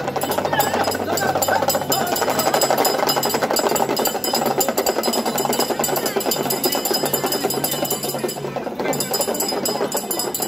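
A crowd of men shouting together while carrying the palanquin, over a fast, unbroken clatter.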